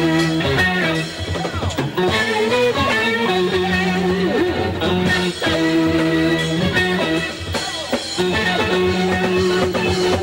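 Live blues-rock band music led by electric guitar, with held notes bent up and down in pitch over bass and drums.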